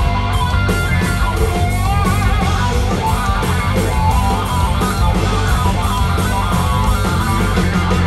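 A live rock band plays loudly: distorted electric guitars over bass and drums with a steady beat. A guitar line that wavers in pitch stands out from about two seconds in, and no singing is heard.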